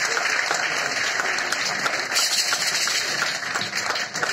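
Audience applauding at the end of a dance performance: a dense, steady patter of many hands clapping, briefly a little louder a little over two seconds in.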